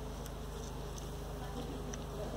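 Steady low electrical buzz and hum from a public-address microphone system, with no change in level.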